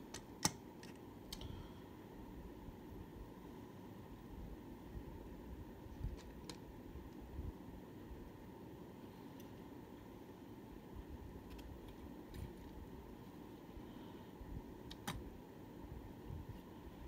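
Quiet steady room hum with a handful of light, sharp clicks scattered through it.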